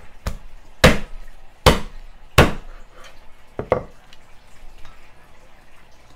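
Heavy chopping blows of a cleaver through a chicken on a wooden cutting board: five strokes in the first four seconds, the three middle ones loudest, then only light handling noise.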